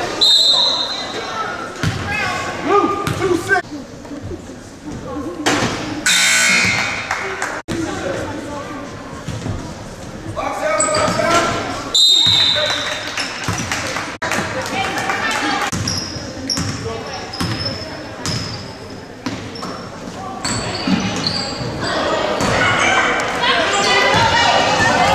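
Indoor youth basketball game: a ball bouncing on the hardwood court and players and spectators calling out, with a short referee's whistle blast just after the start and another about halfway through.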